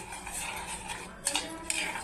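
Steel spoon stirring and scraping around a stainless-steel pot of milk as lumps of jaggery are stirred in to melt, with a few sharper clinks of spoon on pot in the second half.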